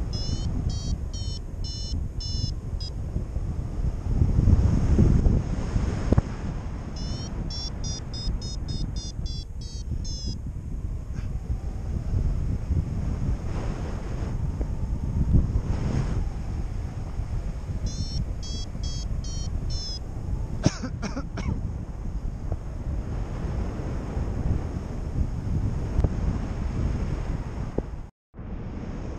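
Airflow rushing over the microphone in paraglider flight, with a flight variometer's rapid high beeping, about four beeps a second, in three short spells that stop after about two-thirds of the way through. The broken-up climb tone is the sign of a thermal falling apart.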